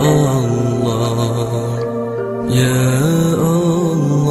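Music with a chanted devotional vocal: long held notes that step up and down in pitch, with gliding changes about halfway through.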